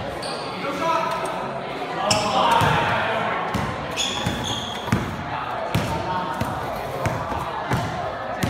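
A basketball being dribbled on a hard gym floor, the bounces ringing in the hall. It comes as a string of bounces a little under a second apart, from about halfway through.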